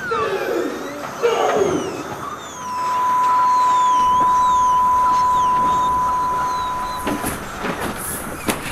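A steady, loud electronic beep tone held for about four and a half seconds, starting about two and a half seconds in, with wavering high whistling glides above it. Before it, short warbling, chattering sounds.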